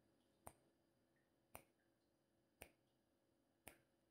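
Countdown timer ticking sound effect: four short ticks, about one a second.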